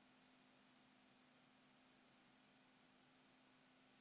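Near silence: room tone, a faint steady hiss with a faint hum.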